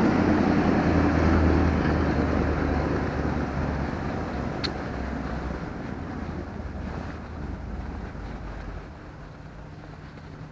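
A bus passes close by on the street, its engine hum and road noise loud at first, then fading steadily as it moves away. A short high squeak sounds about halfway through.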